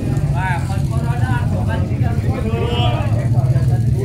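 Several people talking in the background, with a steady low rumble underneath.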